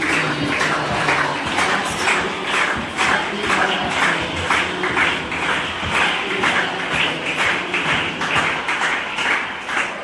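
A group of schoolchildren singing a birthday song together while clapping in time, about two claps a second.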